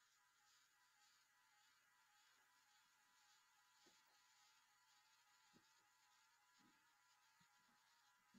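Near silence: a faint steady hiss, with a few faint short ticks.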